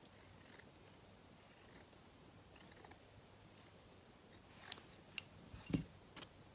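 Scissors cutting cotton fabric, quiet at first, then a few short, sharp snips in the last second and a half.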